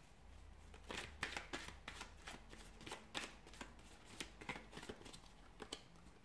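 A deck of tarot cards being shuffled and handled, a run of quick, irregular papery flicks and taps that starts about a second in and stops just before the end.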